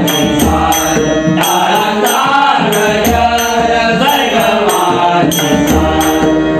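Marathi devotional bhajan: men singing to harmonium, with a pakhawaj barrel drum and small hand cymbals keeping a steady beat, the cymbal strikes ringing brightly about twice a second.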